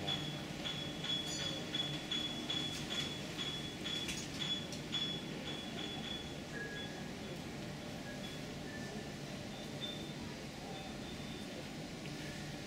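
Steady background hum with a faint, high-pitched beep or chirp repeating about two to three times a second. Around halfway through the beeps thin out to only an occasional one.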